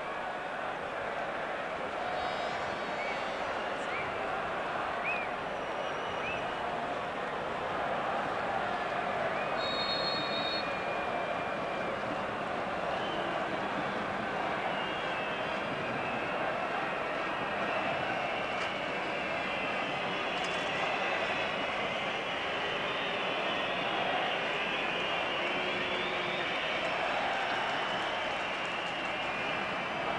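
Steady crowd noise from a full football stadium, a constant wash of many voices. There are a few short high tones about ten seconds in.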